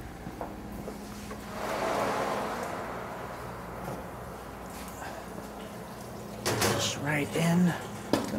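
Stainless wall oven door being opened: a rushing, scraping noise swells about a second and a half in and fades over the next second or so.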